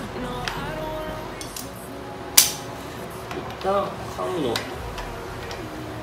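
Background music with one sharp metallic clink about two and a half seconds in, from hand tools on the timing-chain end of a Porsche 911SC engine under reassembly. Fainter tool clicks come and go around it.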